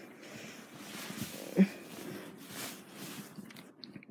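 Rustling and handling noise of fingers and bedding moving against the phone, with one short louder bump about a second and a half in.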